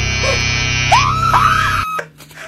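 Electric rotary shaver buzzing loudly and steadily, cutting off suddenly near the end. About halfway through, a voice wails over it in a few rising cries.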